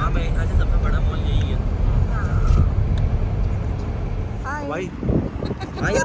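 Car driving, a steady low rumble of engine and road noise heard from inside the cabin, which drops away about four and a half seconds in. Brief voices sound over it, more clearly near the end.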